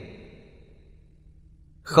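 A man's lecturing voice trailing off, then a pause with only a faint steady low hum, and the voice starting again near the end.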